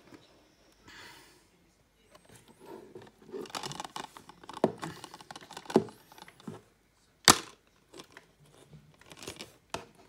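Plastic Blu-ray keep case being picked up and handled, with rustling and scraping. About seven seconds in comes one sharp click as the case snaps open, followed by a few lighter clicks.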